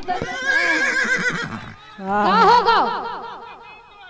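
A person's voice in two long, rapidly quavering cries; the second starts loudest and fades away.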